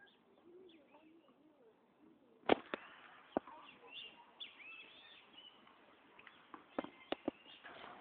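Tennis ball being hit with rackets: a sharp pop about two and a half seconds in, a couple more soon after, and a quick run of three near the end. Birds chirp faintly in between.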